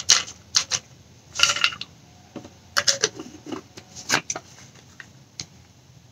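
Kelp supplement bottle and tablets being handled: a series of irregular small clicks and rattles, most of them in the first two-thirds.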